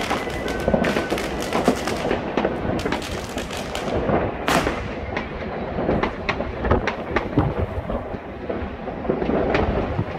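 New Year's Eve fireworks and firecrackers banging across a city: many sharp bangs, near and far, over a continuous low rumble of distant explosions. A louder hissing burst comes about four and a half seconds in.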